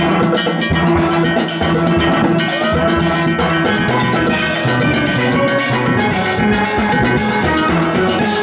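A steel orchestra playing live: many steel pans carrying the tune together over a rhythm section of drums and metal percussion, including a ridged metal scraper.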